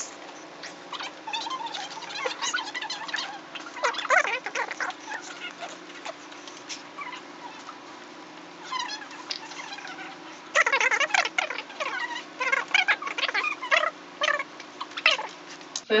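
Dry-erase marker squeaking and scratching on a whiteboard as equations are written, in many short strokes. The writing is busiest about four seconds in and again over the last five seconds.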